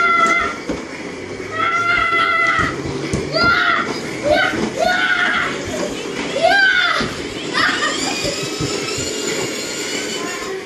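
A toddler's high voice: two level, held calls in the first few seconds, then a run of short squeals and shouts that rise and fall in pitch.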